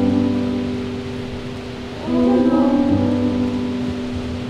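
Electric keyboard playing sustained piano chords in a slow ballad accompaniment. The chords fade a little, then a new chord is struck about two seconds in.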